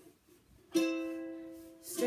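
A ukulele strummed once, a little under a second in; the chord rings out and fades away over about a second.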